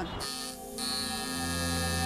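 Sustained ambient music drone with several held tones, and beneath it a low steady electric buzz that strengthens about a second in, fitting a tattoo machine running against skin.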